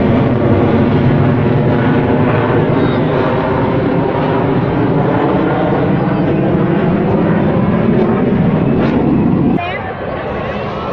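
Military jet aircraft flying over an air show, their engines making a loud, steady drone that cuts off suddenly just before the end.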